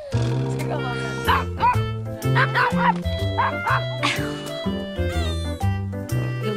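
Miniature pinscher barking in short, high yaps, several between about one and three seconds in and another near four seconds, over background music.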